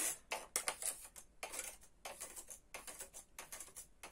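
Irregular clicks and light rattles from working a domestic punchcard knitting machine, with plastic and metal parts knocking against the needle bed as it is reset to re-knit the first row.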